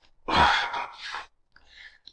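A person's long, breathy sigh with a little voice in it, followed by a faint short breath near the end.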